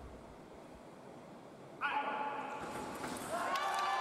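Faint hall ambience, then about two seconds in a sudden loud, sustained shout from a sabre fencer as the winning touch lands, with hall noise building after it.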